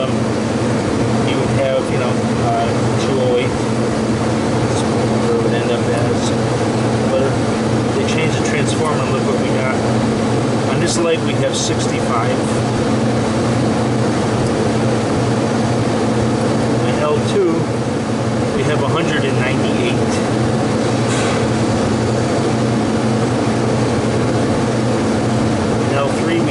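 Refrigeration condensing-unit fans running with a loud, steady mechanical drone and a low electrical hum, with faint voices in the background.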